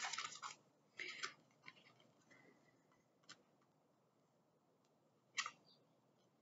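Near silence broken by a few faint rustles and light ticks of tarot cards being spread out across a cloth-covered table, with one short, sharper sound about five and a half seconds in.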